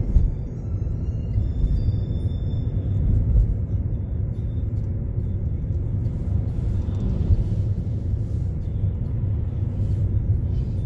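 Steady low rumble of a vehicle on the move, engine and road noise, with faint music in the background.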